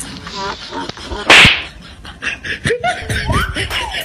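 Slapstick comedy sound effects: a loud slap-like hit about a second in, with further smacks and clicks, short rising squeaky glides, voices and laughter.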